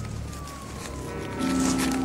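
Film soundtrack: a single long tone slides steadily down in pitch, and about one and a half seconds in a low held music note comes in beneath it and grows louder.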